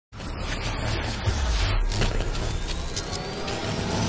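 Cinematic intro sound design: a deep, steady rumble with scattered electric crackles and a faint whine that rises slowly through the second half.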